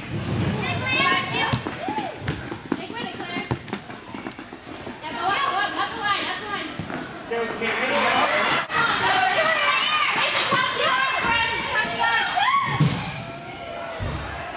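Children shouting and calling out across an indoor soccer arena, with the voices echoing off the hall and overlapping. There are a few sharp thuds of a soccer ball being kicked. The voices are busiest in the second half.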